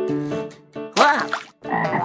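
Two cartoon frog croaks, each a short call that swoops in pitch, about a second in and again near the end. A light plucked, marimba-like tune plays before them.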